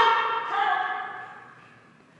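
A person's voice calling out a short command at the start, then a second, drawn-out call about half a second in. The calls are 'jump' commands to a dog running an agility course.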